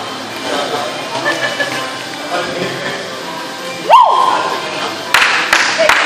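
Background music and voices in a large gym hall. About four seconds in, a single tone rises quickly and holds steady for about a second. It is followed by a burst of noise with a few sharp clicks.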